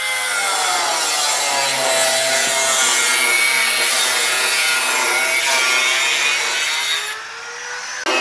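Handheld electric angle grinder with a cutting disc slicing through a pressed-steel window frame: a loud, harsh grinding whine whose pitch sags as the disc bites into the metal. Near the end the cutting noise drops away and the motor's whine climbs back up in pitch as the disc comes off the steel.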